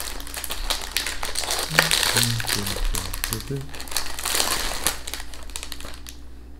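Plastic wrapper of a Delicje biscuit package crinkling and crackling as it is opened and handled, busiest about two seconds in and again a little past four seconds.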